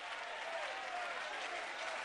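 Congregation applauding steadily, with a few faint voices calling out among the clapping.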